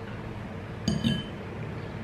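A metal fork clinks once against a glass bowl about a second in, with a brief ringing.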